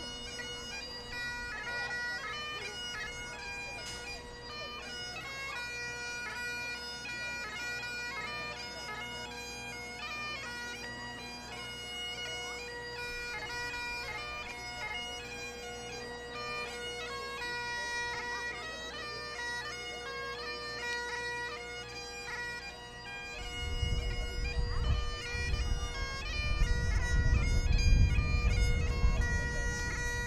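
Great Highland bagpipe played by a walking piper: steady drones under a shifting chanter melody. About three-quarters of the way through, a loud low rumble joins in and stays the loudest sound.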